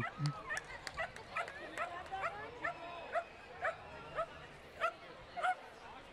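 A small dog, a dachshund, yapping over and over in quick, high barks, about two or three a second.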